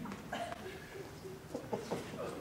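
Faint, scattered chuckling from a theatre audience, with a couple of small clicks near the end.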